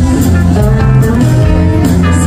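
Live band music played loud through a PA: electric guitar, bass and a drum kit with cymbals keeping a steady beat.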